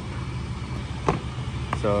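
A steady low motor hum runs throughout. About a second in there is a single knock as an 8-inch subwoofer is set down on a truck's plastic air-filter box.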